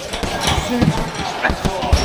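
Boxing-gloved punches landing on a hanging heavy bag: several sharp thuds, roughly half a second apart.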